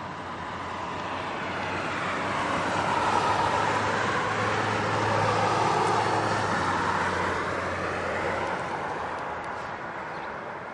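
A vehicle passing by: a steady noise with a low hum under it that grows louder over the first few seconds, is loudest in the middle and then fades away.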